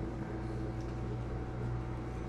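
Steady low electrical hum with a few constant tones over even background noise, like a running fan or appliance.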